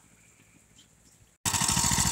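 Near silence for about a second and a half, then the go-kart's small engine running loudly with a fast, even putter, cutting in suddenly.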